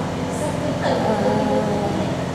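Steady low hum of a room air conditioner, with a voice holding a drawn-out hesitant "uhh" from about a second in.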